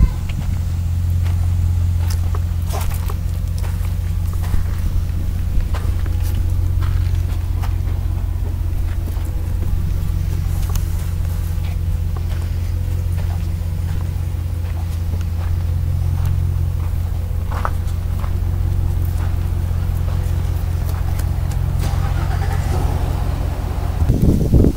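A steady low motor hum runs throughout, with a few faint knocks.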